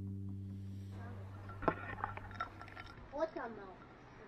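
Acoustic guitar background music fading out over the first three seconds, with a couple of sharp clicks, then a short pitched vocal call about three seconds in.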